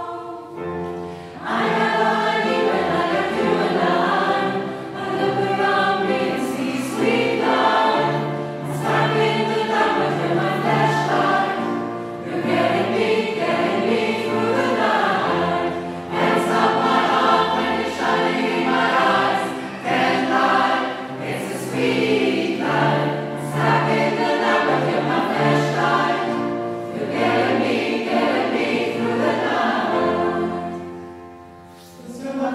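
Mixed choir of women's and men's voices singing a choral arrangement of a pop song, phrase after phrase with short breaths between, sustained low bass notes beneath, in a church's reverberant acoustic.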